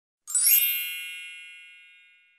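A bright chime sound effect: a single ding that comes in about a third of a second in, then rings on and fades away over about two seconds.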